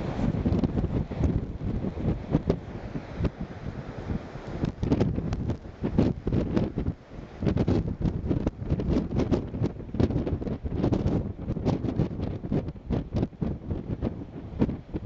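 Wind buffeting the camera microphone in irregular gusts, a loud uneven rumble that rises and falls throughout.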